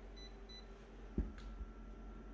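Two short electronic beeps from a photocopier's touchscreen control panel as keys are pressed, then a soft thump just past a second in and a faint steady tone that starts right after.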